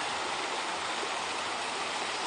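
Steady rush of falling, splashing water from a park waterfall.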